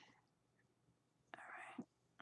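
Near silence, with a soft, breathy spoken "all right" about a second and a half in.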